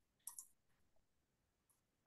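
Near silence, with two faint short clicks about a quarter of a second in.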